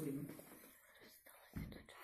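A pause in talk in a small room: the end of a woman's sentence, then faint murmured voices and a short low thump near the end.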